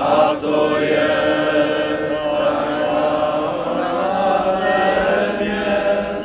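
A crowd of men and women singing a slow song together in unison, with long held notes.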